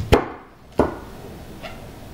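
Chef's knife chopping through cabbage core onto a plastic cutting board: two sharp chops, the louder right at the start and the second just before a second in, then a faint tap.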